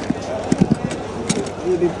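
A few short clacks of hard plastic gadgets being handled, a cluster of them about half a second in and another just past the middle, over background voices.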